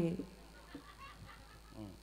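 A voice on a stage microphone trailing off at the start, then a quiet lull with faint background voices and a short vocal sound near the end.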